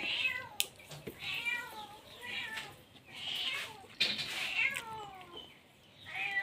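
A domestic cat meowing several times in a row, the longest meow about four seconds in, falling in pitch.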